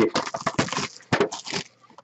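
Plastic shrink-wrap being torn and pulled off a trading card box: a quick run of crackles and crinkles that dies away near the end.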